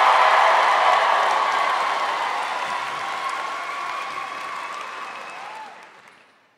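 Live audience applauding, loudest at the start and dying away over several seconds.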